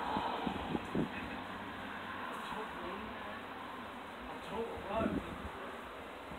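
Faint voices from people some distance off, heard in short snatches over steady outdoor background noise.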